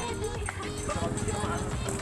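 Background music with a steady beat and held tones, with a voice faintly over it.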